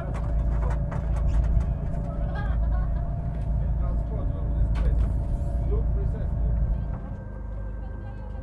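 Boat noise on deck: a heavy low rumble of wind on the microphone over a steady mechanical hum from the boat, with faint voices in the background. The rumble drops noticeably quieter about seven seconds in.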